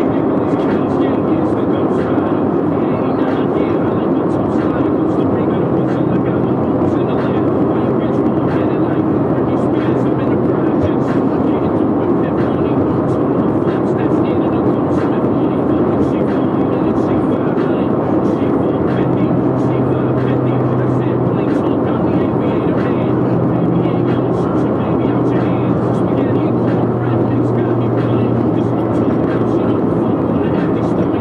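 Honda Civic EG with a B18C4 VTEC four-cylinder, heard from inside the cabin while cruising steadily at dual-carriageway speed. A constant engine drone sits under tyre and wind roar.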